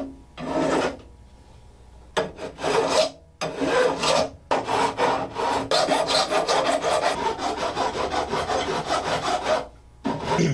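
A flat file rasping along the edge of a guitar neck, filing the metal fret ends flush with the fretboard edge and giving them a slight bevel. One stroke at the start, a pause of about a second, then a few strokes, then a long run of quick back-and-forth strokes, several a second, until just before the end.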